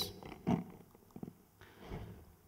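A pause at a lectern microphone: a short, throaty breath sound from the speaker about half a second in, then a few faint clicks over low room noise.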